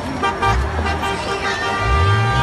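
Vehicle horn held for about a second in the second half, over street and crowd noise.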